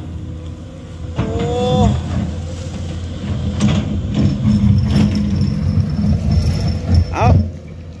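SANY SY205C hydraulic excavator working under load, its diesel engine running steadily as the bucket digs into hard weathered rock, with a few knocks of rock against the bucket.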